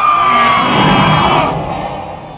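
Deathcore music: a long screamed vocal that falls in pitch and holds over the band's dense heavy-metal backing, trailing off about half a second in. The band then fades out over the last half second.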